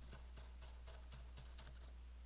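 A quick run of light clicks, about four or five a second, that stops shortly before the end, over a faint steady low hum.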